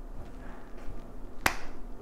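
A single sharp click about one and a half seconds in, over faint room noise.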